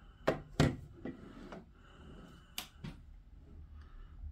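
Handling knocks and clatters of a plastic WiFi extender and its power cord on a wooden table. There are a handful of sharp knocks, the two loudest in the first second and two more near the three-second mark.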